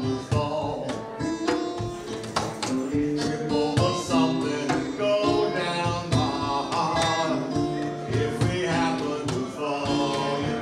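A man singing a song live while strumming an acoustic stringed instrument in a steady rhythm.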